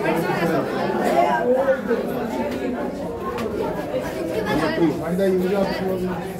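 Chatter of several young voices talking over one another, no single speaker clear.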